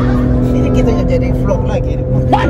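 Steady drone of a car at speed heard from inside the cabin, holding one even pitch with no rise or fall, with faint snatches of voice over it.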